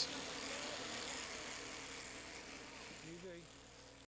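Electric sheep-shearing handpiece running steadily as it shears a fleece, fading out gradually, with a brief pitched call a little after three seconds in.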